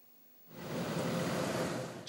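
A steady rushing noise of outdoor ambience that starts about half a second in, after a moment of near silence.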